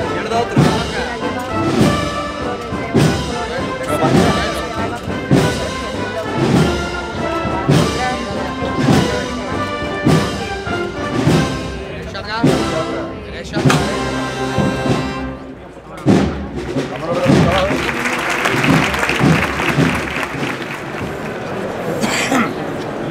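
Processional brass band playing a Holy Week march: trumpets and trombones over a steady drum beat. About sixteen seconds in the march drops back briefly and a noisier wash of sound takes over, with the beat still faintly going.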